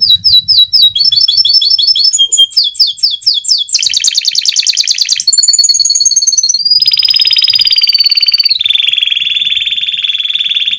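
Domestic canary singing a long song in changing phrases. It opens with repeated chirped notes of about six a second, moves into very fast trills, a short run of whistled notes, then a long trill with a thin high whistle held over it, and ends on a lower rapid trill.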